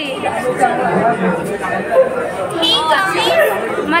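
Chatter: several women's voices talking over one another, with no clear single speaker.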